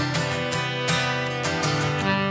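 Acoustic guitar strummed in a steady rhythm, with a saxophone playing sustained notes over it, in an instrumental gap between sung lines of a country ballad.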